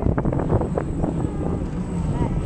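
Wind buffeting the microphone of a camera carried on a swinging Viking boat ride, a steady low rumble, with brief clatter in the first second.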